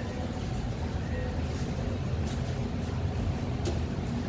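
Steady low rumble of commercial kitchen ventilation and equipment, with a couple of faint light clicks from handling items on the stainless-steel counter.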